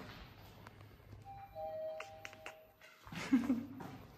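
Faint background music: a couple of soft, held notes over a near-quiet stretch, with a few light clicks.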